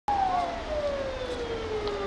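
Fire truck siren wailing: one slow tone falling steadily in pitch and levelling off near the end, over a low traffic rumble.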